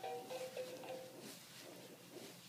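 A simple electronic tune of short, evenly pitched notes playing from a baby toy, fading out about a second in.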